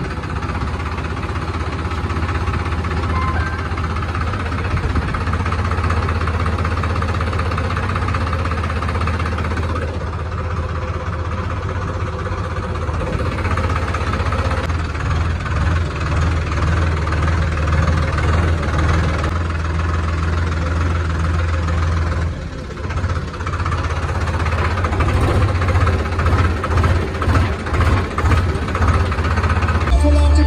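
A vehicle engine running steadily with a low drone, with a brief drop about three quarters of the way through and an uneven, pulsing level near the end.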